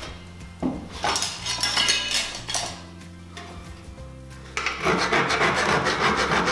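Hand file rasping on the metal lip of light-gauge steel cable tray, cutting into the lip so it can be snapped off: a run of strokes about a second in, a quieter pause, then louder, continuous filing over the last second and a half.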